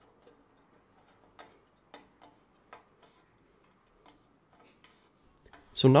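Faint, irregular light clicks and taps of a 3D-printed wood-fill plastic cover plate being pressed and settled into the opening of a bandsaw's metal table around the blade.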